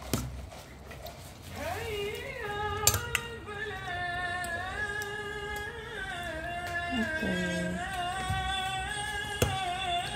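A voice singing long, wavering held notes, beginning about two seconds in, with a few sharp clicks along the way.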